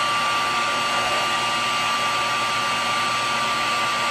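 VT1100 electric heat gun running steadily, blowing hot air onto adhesive-lined heat shrink tubing to melt its glue: an even rush of air with a steady high whine.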